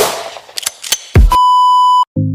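Electronic intro music dying away, with a few clicks and a deep hit about a second in. Then a steady TV colour-bar test-tone beep holds from about a second and a half in and cuts off abruptly.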